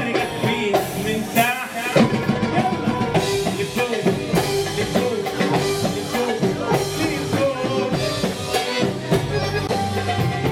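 Live Arabic dance music from a band with electronic keyboards and percussion, playing a steady, lively beat.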